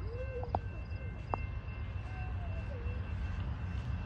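Steady low outdoor rumble with faint far-off voices, and two sharp clicks in the first second and a half.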